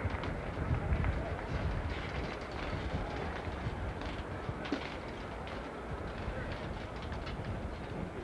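Hushed golf gallery while a player stands over a putt: faint crowd murmur over steady outdoor background noise with a low rumble.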